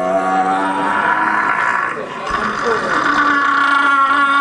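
Wordless vocal sound poetry: a man's voice holding steady droning tones. About two seconds in it breaks into a rougher stretch with sliding pitch, then the drone resumes.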